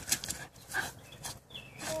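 Schnauzer sniffing and snuffling with its nose down in a hole in the ground: a string of short, sharp snorts.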